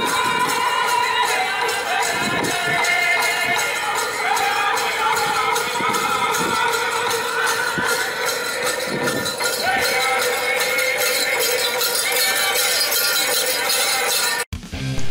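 Music for a Native American dance with melody and a steady jingling, as from bells or rattles, and occasional low thumps.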